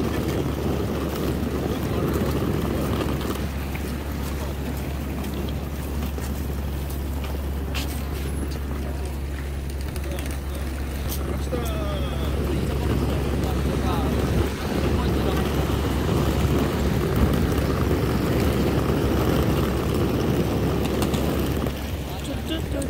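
Steady low rumble of street traffic mixed with wind on the microphone, with faint voices now and then.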